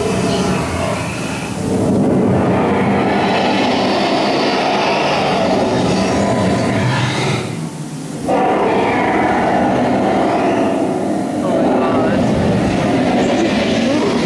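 Animatronic dragon's growling and rumbling sound effects filling the cave, in two long loud stretches with a short drop just before the middle.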